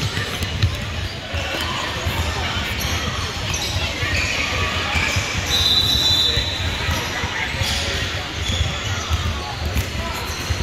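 Basketball bouncing and sneakers on a hardwood gym floor, with voices echoing in the hall. About halfway through, a referee's whistle sounds once, a steady high tone lasting about a second.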